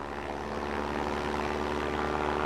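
Propeller-driven aircraft's piston engine droning steadily, slowly getting a little louder.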